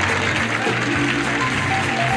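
Upbeat game-show prize music, the band's cue for a prize reveal, with a bass line stepping from note to note.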